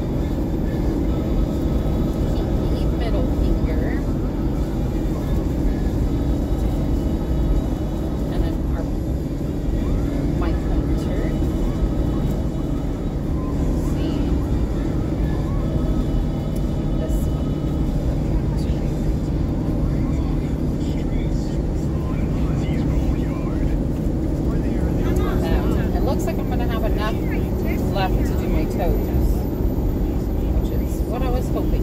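Steady road and engine noise inside the cabin of a moving car. Faint voice-like sounds come in near the end.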